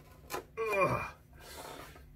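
A violin maker's opening knife prying at the glued seam of a violin's top plate, with a brief crack early and a faint scraping rub of the blade in the joint near the end, under a groaned "ugh".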